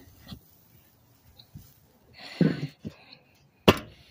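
The metal lid of a kettle grill set down onto the bowl, with one sharp clank near the end. A shorter, softer noise comes a little past halfway.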